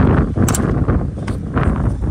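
Wind buffeting the microphone: a loud, gusting low rumble. A single sharp click comes about half a second in.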